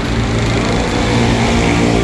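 A KRL electric commuter train standing at the platform with its doors open, its onboard equipment running with a steady, even hum.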